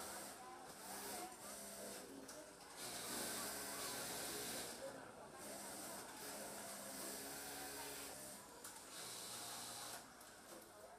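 Faint garment-workshop ambience: background voices with repeated hissing that swells for about two seconds at a time.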